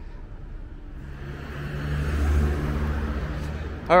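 A motor vehicle driving past, its engine and tyre noise swelling from about a second in to its loudest around halfway through, then easing off.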